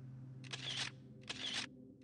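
Camera-shutter sound effect: two shutter shots about a second apart, used as a transition as a photo comes up on screen.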